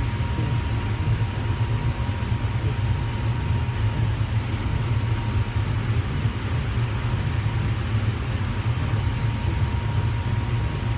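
A steady low rumble with an even hiss over it and a faint high hum, not changing at all.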